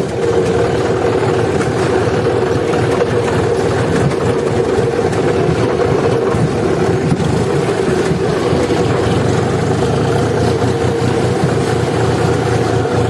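John Deere tractor's diesel engine running at an even, steady speed while driving, heard from the driver's seat.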